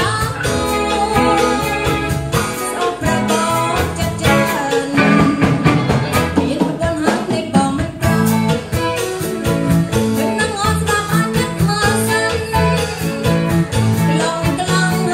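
Live band playing a cha-cha-cha: a woman sings in Khmer into a microphone over electric guitar and a drum kit keeping a steady beat.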